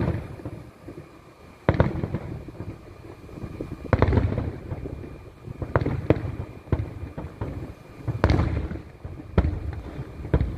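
Aerial fireworks shells bursting one after another: about eight sharp bangs at uneven intervals, some in quick succession, each trailing off in a low rumble.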